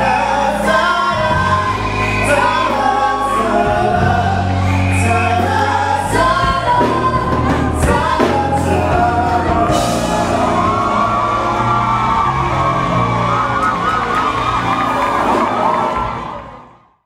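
A man and a woman singing a duet into microphones over a backing track with a steady bass line. From about ten seconds in, the singing turns to long held notes with a wavering vibrato.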